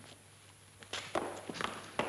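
A few footsteps on a hard floor, starting about a second in as a short run of sharp steps.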